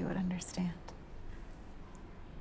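Soft, near-whispered speech during the first half second or so, then low, steady room tone.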